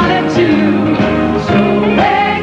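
Singing over band accompaniment, one song continuing without a break.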